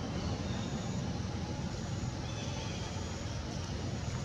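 Steady low rumbling outdoor background noise, with a few faint, short high-pitched tones above it.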